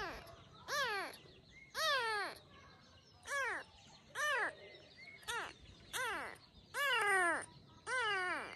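Very young kitten meowing over and over, about once a second, each cry rising and then falling in pitch; the finder thinks it has not eaten.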